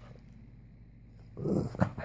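Pug puppy vocalizing briefly, about a second and a half in, with a sharp sound near the end of the call.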